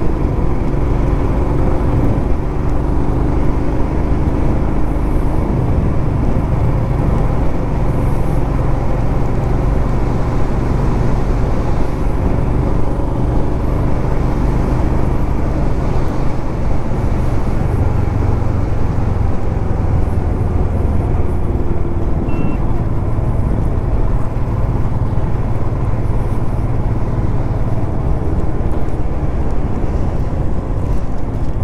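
Royal Enfield motorcycle engine running at a steady cruise on the move, with wind and road noise. The engine note rises and falls slightly now and then.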